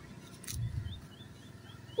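A small bird chirping, a quick run of about six short high chirps in the second half, after a brief low thump about half a second in.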